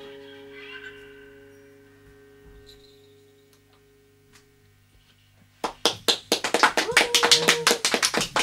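A final guitar chord ringing and slowly dying away over about five seconds. Then, about five and a half seconds in, sharp hand claps start suddenly, several a second and irregular, and become the loudest sound: a small group applauding in a small room at the end of the song.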